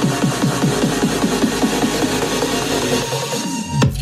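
Electronic dance music played through a pair of Micca MB42X bookshelf speakers driven by a Lepai two-channel amplifier. Short repeated synth notes run about four a second; near the end the pattern breaks and a deep bass note comes in.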